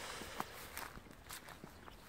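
Faint footsteps on grassy ground: a few soft, irregular steps.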